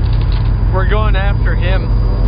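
A steady low rumble throughout, with a person's voice calling out briefly in a wavering pitch about a second in.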